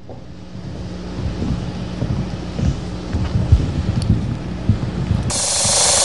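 A low rumbling swell that grows steadily louder, played as a transition effect under the show's logo animation. A bright hiss sweeps in near the end, leading into the music.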